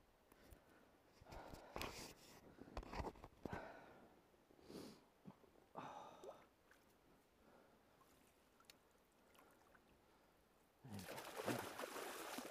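Faint scattered handling rustles and knocks, then about eleven seconds in a sudden loud splashing as a fresh Atlantic salmon thrashes in the landing net in shallow river water.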